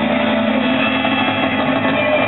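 Live rock band playing loudly: several electric guitars hold a steady, sustained distorted wash with drums underneath, with no breaks in the sound.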